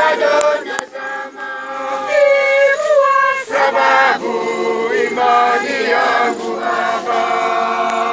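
A crowd of men and women singing a hymn together in many voices, with no instruments heard.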